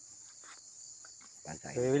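Insects chirring in a steady, high-pitched drone, with a man's voice starting near the end.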